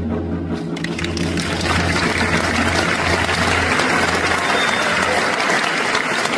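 Last notes of a gayageum piece with Korean drum accompaniment ringing out, then audience applause starting about a second in and swelling to fill the rest.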